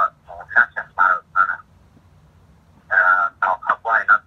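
A man talking in short phrases with a pause of about a second and a half in the middle; the voice has a narrow, telephone-like tone.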